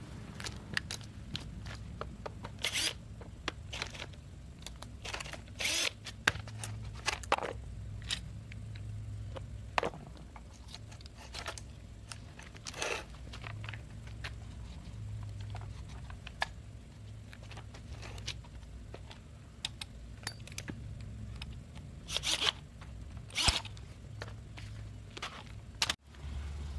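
Scattered clicks, knocks and short scrapes of a Stihl FS85 trimmer's attachment coupling being undone and the shaft and head handled, over a low steady hum. The loudest clicks come about three and six seconds in and again near the end.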